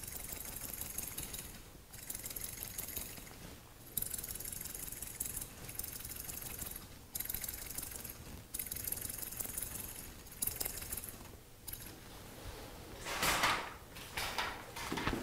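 Hair-cutting scissors snipping rapidly into damp hair, held point-down to point-cut the side of the fringe. The snipping comes in runs of a second or two with short pauses between, and a louder rustle comes near the end.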